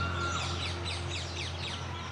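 Small birds chirping outdoors: a quick run of short, high chirps that each slide downward, over a steady low hum.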